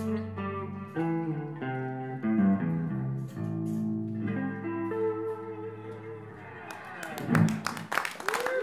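Electric guitar playing a slow closing run of single notes, each left to ring, dying away about three-quarters of the way through as the song ends. Near the end the audience starts clapping.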